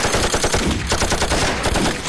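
Rapid, continuous gunfire from several guns at once, the shots coming many times a second without a break.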